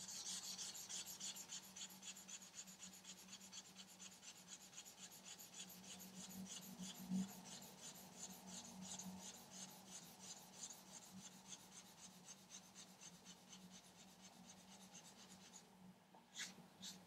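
Polishing charcoal rubbed back and forth over a copper plate in quick, even scraping strokes, faint and fading near the end: the charcoal is smoothing the copper to a flat, matte finish before inlay.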